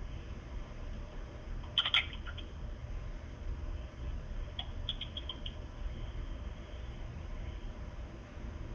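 Short clicks of a smartphone's on-screen keyboard being tapped: a sharp pair about two seconds in, then a quick run of four or five around five seconds in, over a low steady hum.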